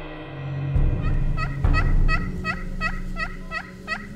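A wild turkey yelping: a run of about nine sharp repeated notes, roughly three a second, laid over low intro music with drum and gong tones.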